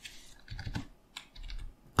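A few quiet, spaced-out computer keyboard keystrokes, the Enter key pressed to insert blank lines.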